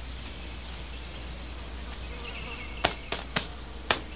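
Insects chirping in a steady high-pitched trill over a low steady hum. In the last second or so, four sharp clicks cut in, louder than the insects.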